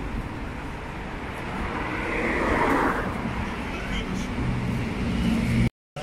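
Street traffic noise: a car passes, swelling to its loudest about two seconds in and then fading, over a steady background of road noise. The sound cuts off abruptly just before the end.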